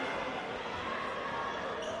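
Sports hall ambience: a steady murmur of distant voices with irregular dull thuds.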